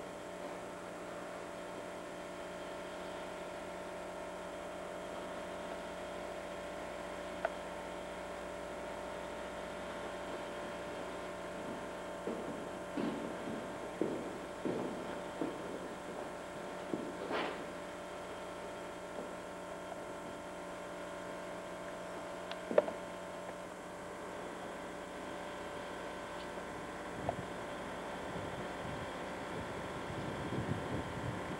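A steady electrical hum made of several even tones, with a few sharp clicks, the loudest a little past two-thirds of the way, and a run of short scuffs in the middle.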